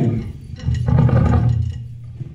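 A live band's song cuts off, and about half a second later a low note from an amplifier swells and fades away after about a second.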